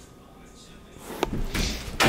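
Interior door being handled: a sharp latch-like click a little over a second in, then a rush of noise as the door swings, growing louder near the end.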